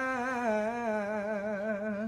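A singer holds one long note with vibrato, the drawn-out last syllable of the lyric 'pembiakannya', with nothing else playing underneath.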